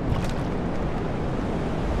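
Sea surf washing onto the beach, a steady rushing noise, with wind buffeting the microphone as a low rumble.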